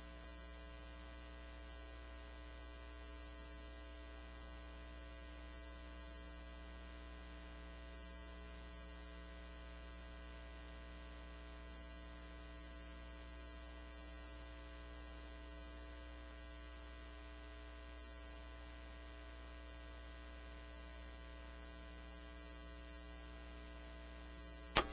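Faint, steady electrical mains hum with a buzzy stack of overtones; nothing else is heard.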